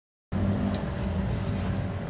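Silence, then a steady low outdoor background rumble that cuts in abruptly about a third of a second in, with a brief faint high chirp soon after.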